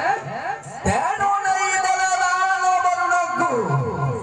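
A man's voice amplified through a stage microphone and PA, declaiming and then holding one long, high, sustained note for about two seconds before it falls away near the end.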